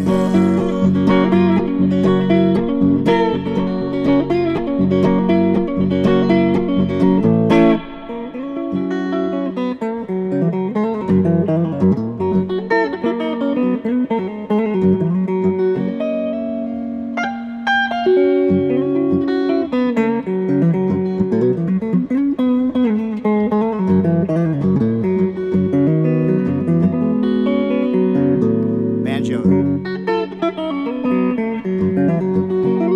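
Hollow-body archtop guitar played solo: an even, rhythmic strum on a repeated chord, then, about eight seconds in, it drops in loudness and moves to picked single-note melodic lines.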